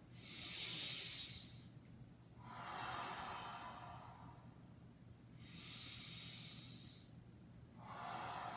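A man's slow, audible yoga breathing, paced with a raising and opening arm movement: four long breaths of about one and a half to two and a half seconds each, a higher, hissier breath taking turns with a lower, softer one, two full in-and-out cycles.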